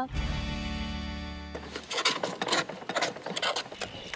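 A held musical chord that fades out within the first two seconds, followed by a run of light, irregular clicks and knocks as freshwater mussel shells are handled and cut open with a knife.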